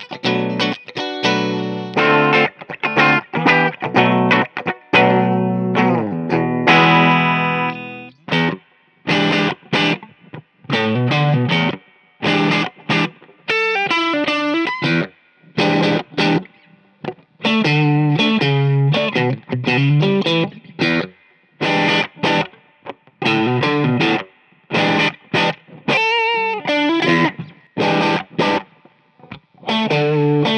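Electric guitar, a Fender Rarities Flame Maple Top Stratocaster, played plugged in. It plays short phrases of chords and single-note runs with brief breaks between them.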